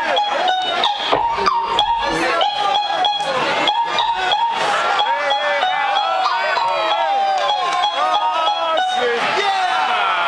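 Vinyl record being scratched on a turntable: a held sound chopped into rapid short cuts, then pitch glides rising and falling as the record is pushed back and forth.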